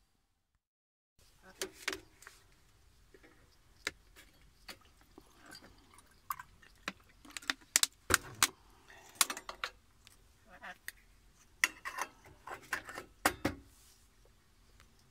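Irregular metal clinks and knocks from the parts of a stainless steel stovetop moka pot being handled at a steel sink, starting about a second in after a moment of silence, with the loudest clinks around the middle and near the end.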